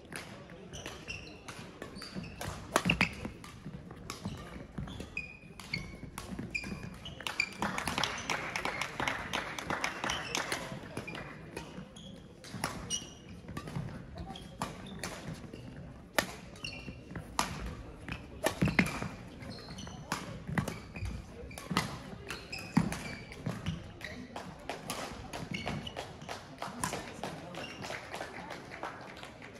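Badminton play in a sports hall: sharp racket strikes on the shuttlecock, footfalls and short high shoe squeaks on the court floor, echoing in the hall with background voices.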